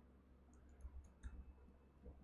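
A few faint computer-keyboard clicks about a second in, as code is typed; otherwise near silence.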